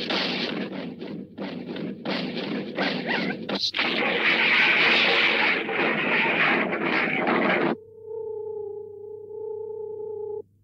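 Cartoon sound effects: about eight seconds of harsh, choppy noise with short breaks between the bursts, then a steady electronic hum of flying saucers near the end.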